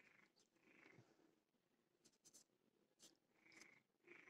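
Near silence, with a few faint clicks from pedicure nippers working at a pigeon's hard, closed metal-and-plastic leg ring.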